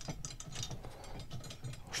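Aluminium hook arm of a Topeak Solo Bike Holder wall mount being screwed onto its bracket by hand: quiet, irregular small clicks of metal and plastic parts as the thread turns.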